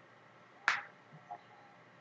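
A single short, sharp click about two-thirds of a second in, over a faint steady background hiss, followed by a couple of much fainter small ticks.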